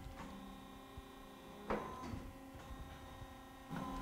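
Faint, steady hum of the Baileigh R-H85 roll bender's hydraulic drive, several steady tones together, with a short louder surge a little under two seconds in as the hydraulic angle guides are worked from the control pendant.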